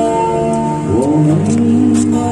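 Live acoustic guitar with a held sung melody, a busker's cover of a Cantonese pop ballad; the voice slides up into a new note about a second in, over a sustained low note.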